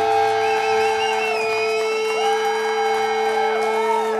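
Live band music with guitars holding long sustained notes and a wavering, vibrato-like high tone above them.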